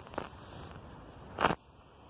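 A few soft footsteps on grass and dead leaves, each short, with the clearest one about one and a half seconds in, over a faint outdoor hiss.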